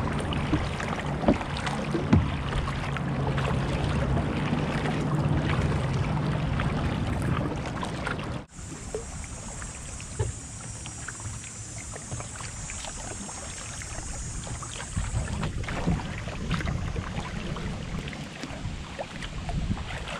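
Kayak moving on a slow river: water sloshing along the hull and small paddle splashes, with a low steady hum through the first eight seconds. The sound cuts off abruptly about eight seconds in, and the water sounds go on quieter, under a steady high hiss for several seconds.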